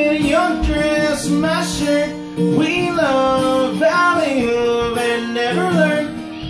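Acoustic guitar strummed under a man's singing voice, with long held vocal notes that bend in pitch.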